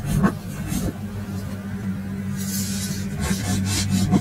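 Live improvised band music: a sustained low note with a couple of drum hits about a second in, then cymbal washes in the second half.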